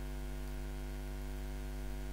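Steady electrical mains hum on the recording: a low buzz with a ladder of even overtones, unchanging throughout, over faint hiss.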